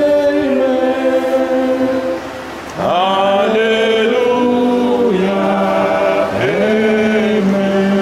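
A small congregation singing a slow worship song together, with long held notes and a short pause for breath about two and a half seconds in.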